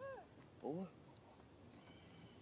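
Two short pitched calls from a young monkey, the first at the start falling in pitch, the second just over half a second later rising.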